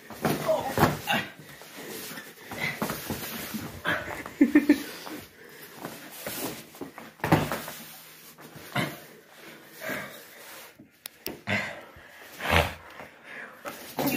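Two people grappling on foam floor mats: irregular scuffling and dull thuds of bodies and gloves hitting the mat, the heaviest about seven seconds in and again near the end, with short bursts of voice in between.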